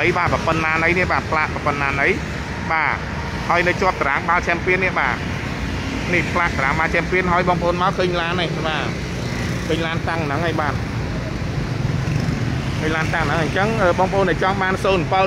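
A person talking in bursts, over a steady low background rumble.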